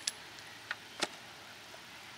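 Two faint, short clicks about a third of a second apart near the middle, over a quiet background; no gunshot.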